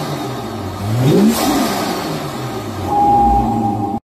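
BMW M2 (F87) engine breathing through an Eventuri carbon-fibre intake, revved once: the pitch rises about a second in and falls back. Near the end it grows louder, with a steady whine.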